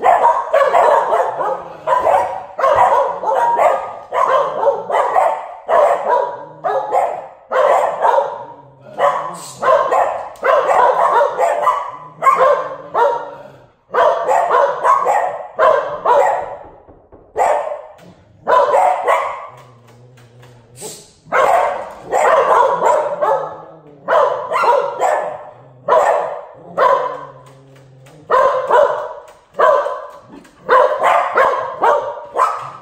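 Cocker Spaniels barking repeatedly in quick bursts, about one burst a second, with a few short pauses.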